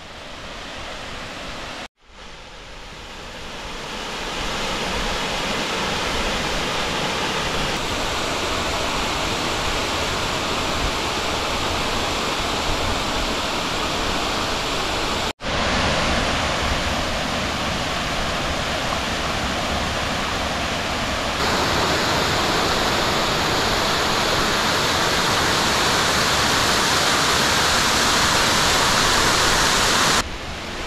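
Ramona Falls, a tall waterfall cascading down a mossy rock face, rushing steadily. The rush grows louder over the first few seconds as the falls come closer, with two brief breaks: about two seconds in and about halfway through.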